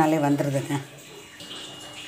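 A voice saying "super" for the first part, then faint wet handling and water sounds as a freshly frozen ice figure is lifted out of its mould in a steel bowl.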